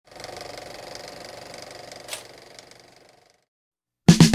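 Old film projector sound effect: a rapid, even mechanical clatter, with one sharp click about two seconds in, dying away after about three seconds.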